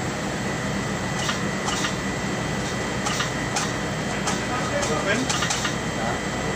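Steady machine noise with a constant high whine, over which come short irregular scraping strokes as old padding is scraped by hand off the perforated steel plate of a garment-pressing machine's buck.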